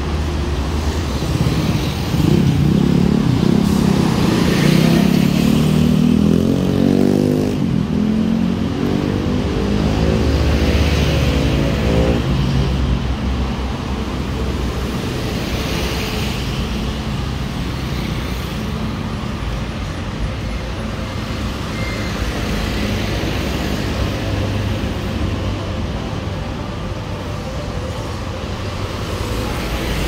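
City road traffic running past close by. In the first dozen seconds a vehicle's engine is loud and revs up, rising in pitch twice as it pulls away, then the traffic settles to a steady rumble.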